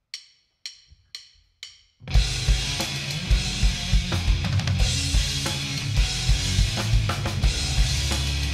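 A drummer's count-in of four evenly spaced clicks, about half a second apart, then a rock band comes in loud about two seconds in: drum kit with heavy kick drum and snare, over bass guitar and electric guitar.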